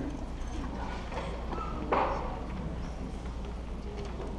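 Hard-soled footsteps clicking on a tile floor in a large hall, with one brief louder noise about two seconds in.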